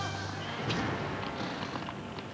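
Advert soundtrack: a low held music note fading away about a second in, over mixed background noise with a few faint knocks.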